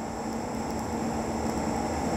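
TIG welding arc on thin Inconel 625 tube: a steady, even hiss with a faint low hum, the arc burning near the end of the weld bead.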